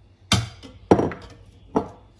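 Three sharp knocks of glassware being set down on hard kitchen surfaces, the loudest about a second in.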